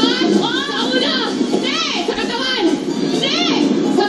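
Women shouting excitedly in high-pitched, strained voices, several voices overlapping with squeal-like rises and falls in pitch.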